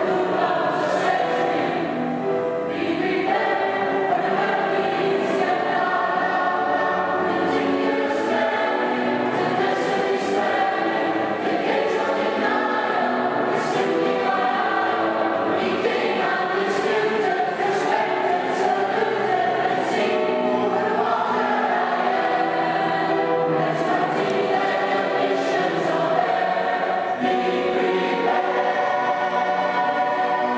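Mixed choir of men and women singing together in sustained, many-voiced harmony, with the sound carried in a large stone church.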